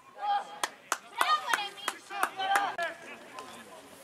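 Excited shouting at a football match during play around the goal, with about seven sharp cracks among the shouts over the first three seconds; it settles down near the end.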